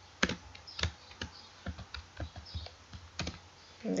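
Computer keyboard typing: a dozen or so separate key clicks at an uneven pace, a few a second.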